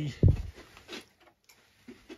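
A brief, deep thump about a quarter of a second in, followed by a couple of faint ticks.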